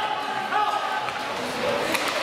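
Voices calling out in an ice hockey arena, with sharp knocks from the play on the ice at the start and near the end.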